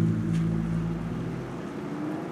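Background music: a sustained low chord fading out over a low rumbling noise.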